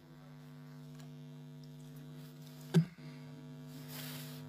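Steady electrical mains hum, a low buzz with many overtones, broken by a single sharp click a little under three seconds in.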